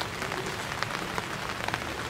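Steady rain falling: an even hiss with scattered faint drop ticks.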